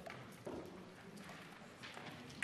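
Quiet room tone of a large debating chamber, with faint murmured voices and a few light knocks and clicks from desks and seats, the sharpest about half a second in and another near the end.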